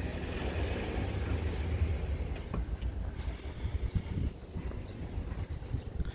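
Outdoor street ambience in a town centre: a steady low rumble with faint background noise and a few small clicks.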